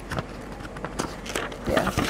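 Paper sheets being turned in a three-ring binder: soft rustling with several short clicks.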